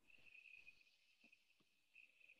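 Near silence: faint room tone with a thin, steady high-pitched tone and a few soft ticks.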